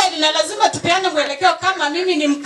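Speech only: a woman talking into a handheld microphone.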